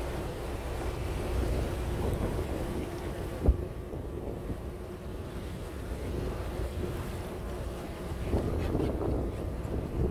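Wind buffeting the microphone over the steady drone of a boat's engine at sea. A single sharp thump about three and a half seconds in.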